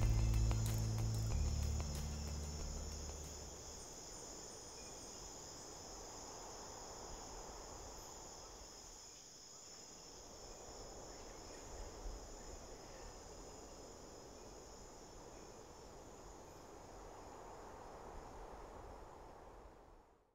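Steady, high-pitched chorus of insects, crickets or similar, over a soft background hiss of ambience. The last low notes of music die away in the first few seconds, and everything fades out at the very end.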